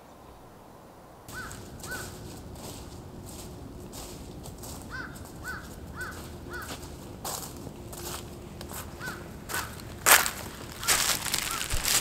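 Footsteps crunching through thick dry fallen leaves, starting about a second in and growing louder as the walker comes close, loudest near the end. A bird calls in short repeated notes throughout.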